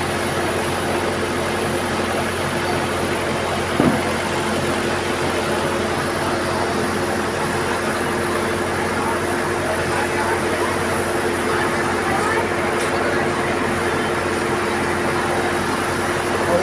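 A John Deere tractor's diesel engine idling steadily under the hubbub of a crowd, with a brief louder sound about four seconds in.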